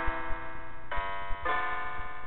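Roll-up electronic piano playing an improvised piece in sustained chords, with a new chord struck about a second in and another about half a second later.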